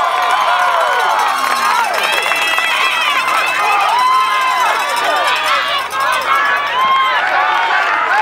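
A crowd of spectators shouting and cheering, many voices overlapping at once throughout.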